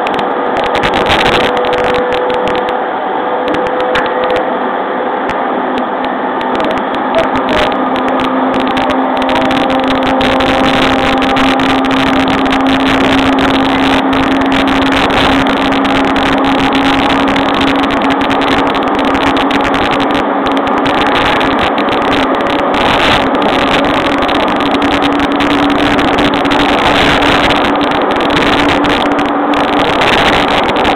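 Running sound inside an E231-series electric train's motor car: a steady rumble of wheels on rail with a traction-motor whine whose pitch slowly rises as the train picks up speed.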